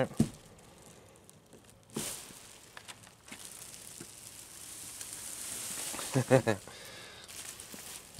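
Plastic sheeting crinkling and rustling as it is handled and pulled back from a car door, with a sharp click near the start and a brief vocal sound about six seconds in.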